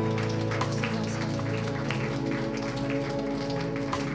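Congregation clapping and applauding over music of steady, held chords.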